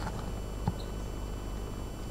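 Low, steady gymnasium background noise from the crowd and hall during a break in play, with one faint click a little under a second in.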